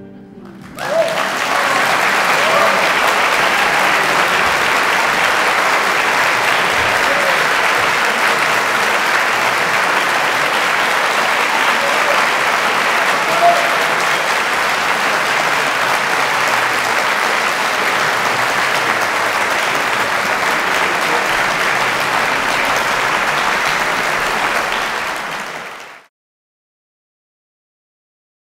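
Concert hall audience applauding steadily, with a few shouts among the clapping. The applause swells in about a second in and fades out near the end.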